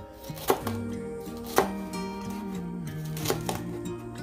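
Chef's knife slicing green bell pepper on a cutting board: three sharp knocks of the blade hitting the board, the first two loudest, over background music.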